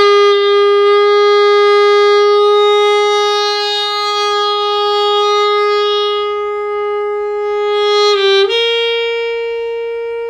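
Alto saxophone playing a long, sustained note rich in overtones. About eight seconds in it wavers briefly and steps up to a slightly higher note, which is also held.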